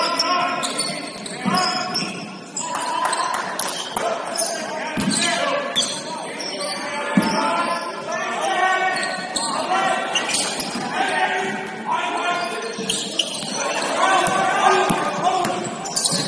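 Basketball game on a hardwood gym floor: the ball bounces with sharp thumps, with players' voices calling out throughout, echoing in the large hall.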